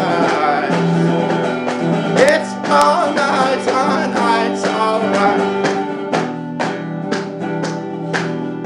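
A band playing an instrumental passage of a country-folk song, with plucked and strummed strings and no singing.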